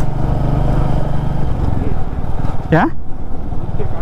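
Royal Enfield Meteor 350's single-cylinder engine running steadily at cruising speed, heard from the rider's seat with wind rushing over the microphone. The engine hum thins out a little before halfway, and a single short spoken word comes near the end.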